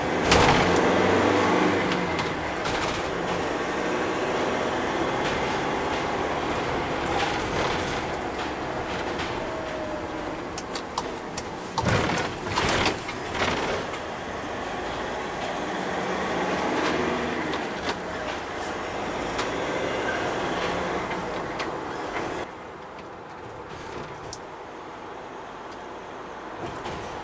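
Cabin noise of a MAN TGE 2.0 van under way, its 177 hp four-cylinder turbodiesel running with tyre and road noise. There are a few clunks about halfway through, and near the end the sound drops suddenly to a quieter, duller level.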